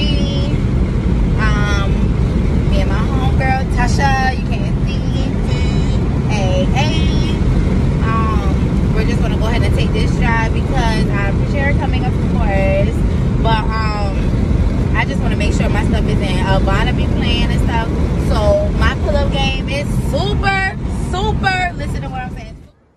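Steady low road and engine rumble inside a moving car's cabin, with a woman's voice over it.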